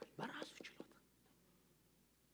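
A man speaking a brief, soft phrase in the first second, then near silence: room tone.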